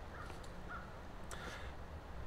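Faint woodland ambience: a steady low rumble with a few faint, distant bird calls, the clearest about a second and a half in.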